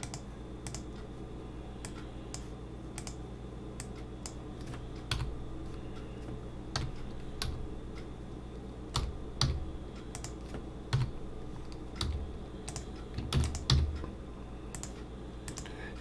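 Computer keyboard keystrokes and mouse clicks, scattered and irregular, over a steady low hum.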